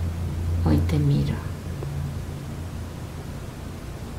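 A woman speaking a few soft, low words about a second in, over a steady low hum.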